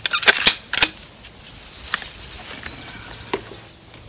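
A quick run of about four sharp clicks and knocks in the first second, from the .308 bolt-action rifle being handled on the bench rest, then quiet with a couple of faint ticks.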